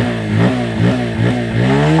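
Bajaj Pulsar P150's single-cylinder engine revved in about four quick throttle blips, then held at higher revs near the end. The exhaust note from its underbelly exhaust is loud.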